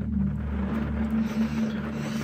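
A steady low drone of background music, several held low notes, over a hiss of rain on the car's roof and windows.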